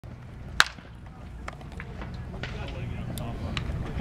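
Wooden baseball bat striking a pitched ball in batting practice: one sharp, loud crack about half a second in, followed by a few much fainter knocks.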